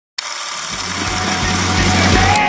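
A live punk rock band playing loud, picked up by a phone microphone as a dense distorted wash of guitars and cymbals. It cuts in abruptly, and bass notes come in underneath about half a second later.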